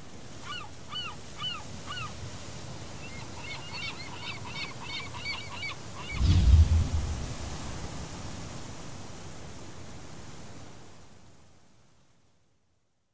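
Gulls calling over steady ocean surf, the calls coming about two a second and then in a quicker run. About six seconds in a loud, low boom hits. The surf bed fades out near the end.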